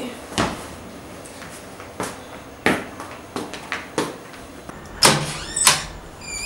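Irregular footsteps and knocks of people moving through a room, ending with the loudest clatter about five seconds in as a house door is unlocked and opened.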